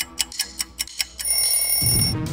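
Countdown-timer sound effect: fast clock ticking, about five ticks a second, then about a second in a steady high alarm-bell ring starting as the answer time runs out.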